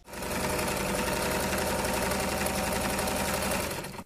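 A sewing machine running fast and steady, a rapid even stitching rhythm that starts abruptly and fades out just before the end.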